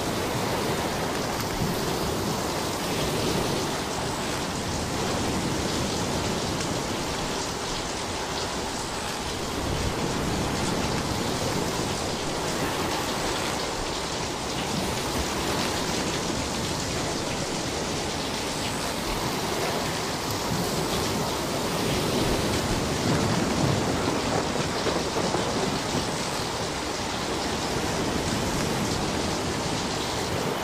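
Small sea waves breaking and washing up a sand and pebble beach: a steady surf hiss that rises and falls gently.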